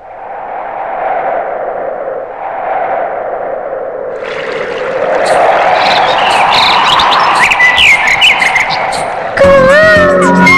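Opening of a film song: a wash of sound swelling steadily louder, with short chirping whistles over it in the later seconds, then the song's instrumental music coming in abruptly near the end.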